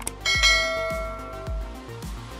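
Background electronic music with a steady beat of about two kicks a second. About a quarter second in, a bright bell chime sound effect rings out and fades over a second and a half: the notification-bell sound of a subscribe-button animation.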